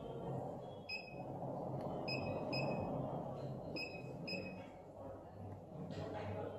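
Balaji BBP billing machine's keypad beeping as its keys are pressed to scroll a menu list: five short, high beeps, spaced about half a second to a second apart.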